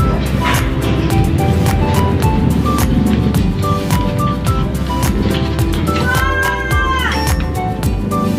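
Background music with a steady beat and a stepping melody. About six seconds in, a long high call with overtones sounds over the music and bends downward at its end.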